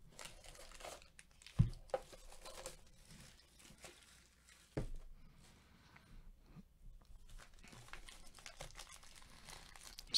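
Plastic packaging on a sealed box of trading cards crinkling and tearing as it is unwrapped and handled. Two soft knocks stand out, one about a second and a half in and one near five seconds.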